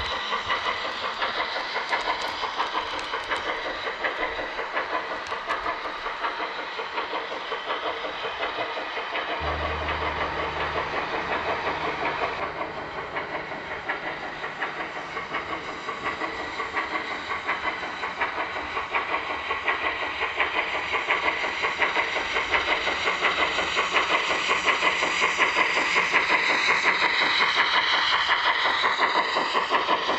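Model Union Pacific 4014 Big Boy steam locomotive running, with rapid steam chuffing and hiss and the train rolling along the track. It grows louder in the last third as the locomotive comes close.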